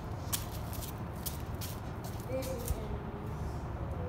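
Outdoor background noise: a steady low rumble, with a few light clicks and taps in the first two seconds.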